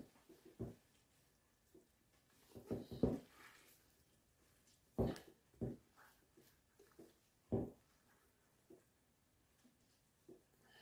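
A handful of faint, short knocks and rubs, spaced a second or two apart, as a wooden pressing board is pushed down hard by hand onto curds in a cloth-lined cheese mould.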